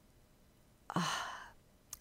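A woman's short breathy sigh, an 'uh' hesitation mid-sentence, about a second in, after a near-silent pause.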